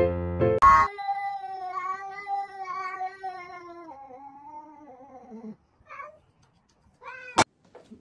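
A domestic cat's long, drawn-out yowl, wavering in pitch for about four seconds and sliding down at the end. A short cat call follows, then a sharp click near the end, after piano music in the first second.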